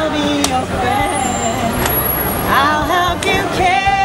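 Protesters chanting and shouting in the street, several voices rising and falling in pitch, over the low rumble of passing city traffic.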